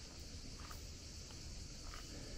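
Faint footsteps on paving, about one step every half second or so, over a steady high hiss and a low wind rumble on the microphone.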